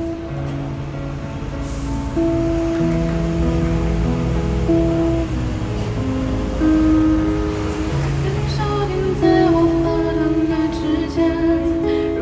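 Live song introduction with guitar: long sustained chords, then a woman's singing voice enters about two-thirds of the way through.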